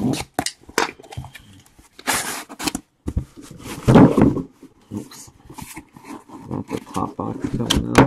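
Cardboard shipping case being opened by hand: packing tape tearing, then a heavy scrape and knock as the box is turned over about four seconds in, followed by cardboard flaps rustling and scraping as they are pulled open.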